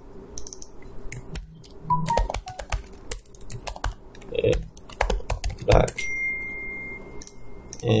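Computer keyboard typing in quick bursts of keystrokes, with a thin steady high tone lasting about a second near the end.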